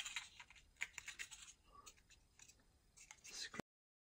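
Faint scraping and small clicks of a wooden dowel rod being pushed through holes in laser-cut cardboard parts. The sound cuts off suddenly shortly before the end.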